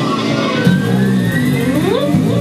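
Amplified live band music in which the electric guitar slides in pitch, with a steep rising glide near the end.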